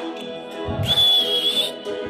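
Dance music playing, with a single shrill whistle held for about a second near the middle.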